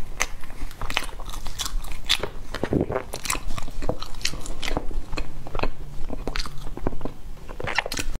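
Close-miked eating sounds: chewing and crunching, mixed with the crackle of a thin clear plastic container and a plastic fork scooping cake from it. Irregular sharp clicks come several times a second.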